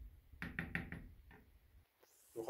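Wooden spoon knocking against a frying pan while stirring: about six quick, faint knocks starting about half a second in.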